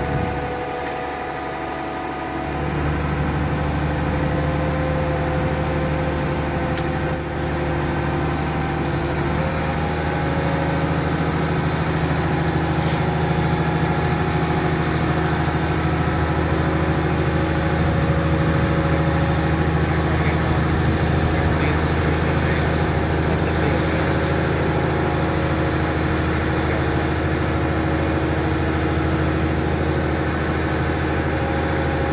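Diesel engine of a Goldhofer heavy-haul transporter running steadily as it moves a steam locomotive. It dips for the first couple of seconds, then picks up and holds a steady drone.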